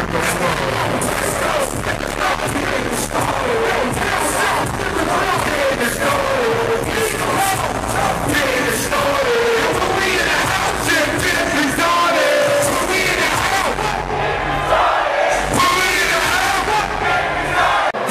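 Live hip-hop performance through a loud PA: two rappers shouting verses over a heavy beat, with crowd noise underneath.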